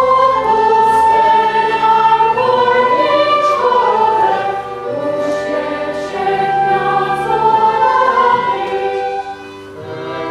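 A choir singing with instrumental accompaniment, the voices holding long notes that move from pitch to pitch. The music drops in level near the end.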